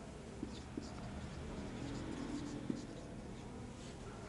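Marker pen writing on a whiteboard: faint squeaks and light taps of the tip on the board as a few words are written.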